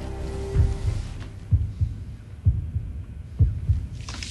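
Deep, heartbeat-like double thumps on a film-trailer soundtrack, about one pair a second. A held low note fades out during the first half second.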